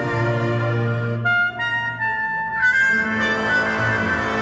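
Live folk band playing an instrumental passage: clarinet and brass over accordion, bouzouki and double bass. About a second in the band thins out to a few single notes, then comes back in full with a strong accent shortly before three seconds.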